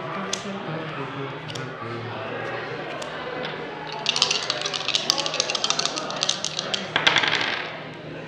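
Two red ten-sided dice rattling rapidly in cupped hands for about three seconds, then tossed onto a wooden table about seven seconds in, over a low murmur of background chatter.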